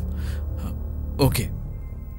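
Soft TV-drama background score of sustained low notes under the dialogue, with a brief breath a fraction of a second in.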